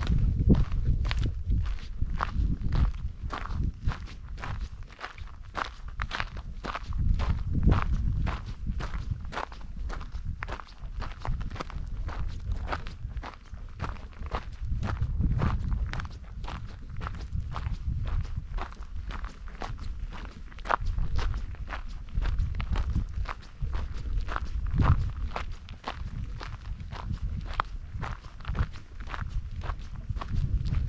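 Footsteps crunching on a gravel trail at a steady walking pace, about two steps a second.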